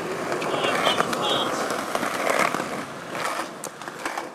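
Skateboard wheels rolling on a concrete sidewalk, a steady rolling rumble that slowly fades, with a few sharp clicks as the wheels cross pavement joints.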